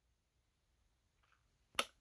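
Near silence, then a single short, sharp click near the end.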